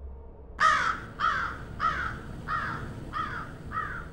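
A bird calling six times in a row, about one call every half second, each call dropping in pitch.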